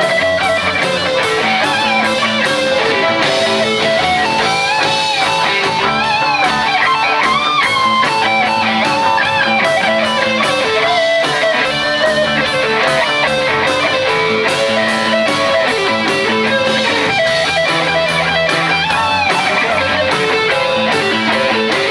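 Live rock band playing: electric guitars and bass over a steady drum-kit beat, with a lead melody sliding in pitch through the middle.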